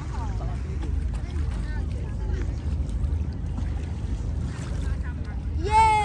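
Faint crowd voices over a steady low rumble. Near the end a boy lets out a loud, long, high-pitched shout.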